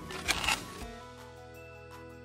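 A balloon popped with a toothpick inside a dried yarn-and-glue shell: a short, sharp burst of noise in the first half second. Light background music follows from about a second in.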